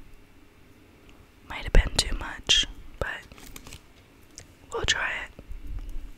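A woman whispering close to the microphone in two short stretches, with a few sharp clicks among the words.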